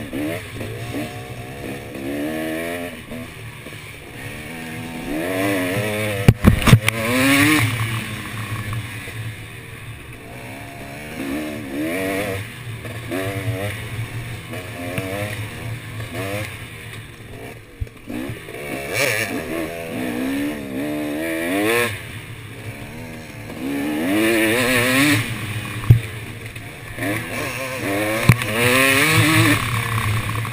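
KTM dirt bike engine recorded on board, revving up and down again and again as the throttle opens and closes and the gears change. A few sharp knocks come about six seconds in and again near the end.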